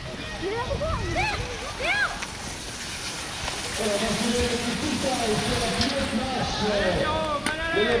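Indistinct voices of people talking and calling out, growing busier about halfway through, over an irregular low rumble of wind on the microphone.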